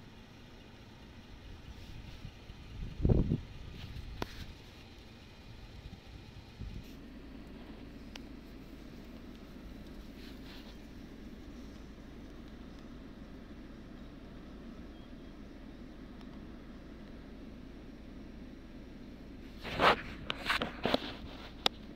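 A vehicle engine idling with a low, steady rumble, and a single dull thump about three seconds in.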